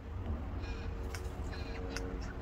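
A bird calling faintly from up in the tree, over a steady low rumble.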